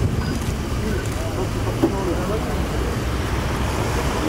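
Steady low rumble of motor vehicles, with people talking in the background.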